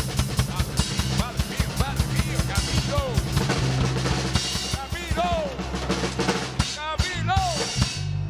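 Drum kit played live: a fast, dense run of kick drum, snare and cymbal strokes that thins out over the last couple of seconds.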